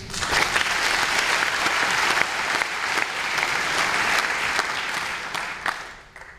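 Concert audience applauding, a dense spread of clapping that starts at once and dies away near the end.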